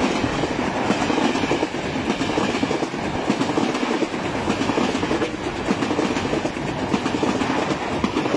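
Passenger train coaches rolling past at close range over a steel truss railway bridge: a loud, continuous rumble of wheels on rails, broken by rapid clacks as the wheels cross the rail joints.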